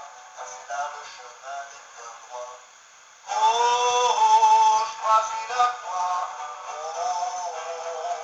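A Christian hymn sung with musical accompaniment, sounding thin with no bass. About three seconds in it gets louder and fuller.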